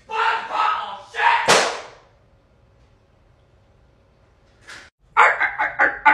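A person's voice talking, cut off by a single sharp slam about a second and a half in that dies away within half a second. A few seconds of near silence follow before talking starts again near the end.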